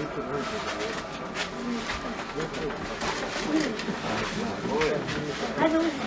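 Indistinct, low voices of several people talking quietly in the background, with no clear words.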